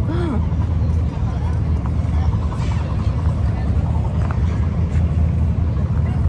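Steady low rumble of wind buffeting the microphone of a camera carried while walking outdoors, with a brief hummed voice right at the start.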